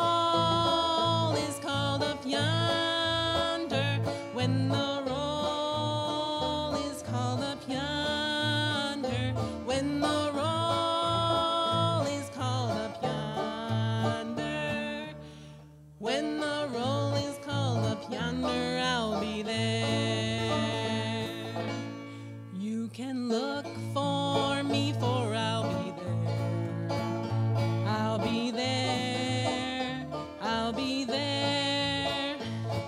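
A live country-style band playing a hymn medley: a woman singing over plucked banjo, electric guitar and acoustic guitar with a steady bass line. The music drops away briefly about halfway, then picks up again.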